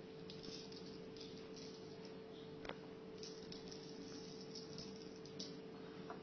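Faint rustling of table salt pinched from a ceramic bowl and sprinkled onto glue-covered paper, over a steady hum, with one small click about two and a half seconds in.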